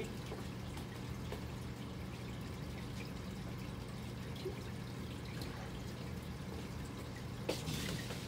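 Aquarium filter running: water trickling steadily over a constant low hum.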